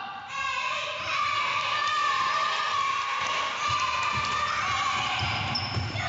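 Children yelling and shouting with high, sustained voices that ring in a large sports hall. Low thuds of running feet and bodies hitting the wooden floor come in the second half.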